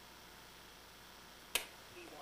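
Near-silent room hiss, broken about one and a half seconds in by a single sharp click.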